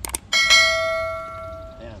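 Subscribe-button sound effect: two quick mouse clicks, then a single bright bell ding that rings out and fades over about a second and a half.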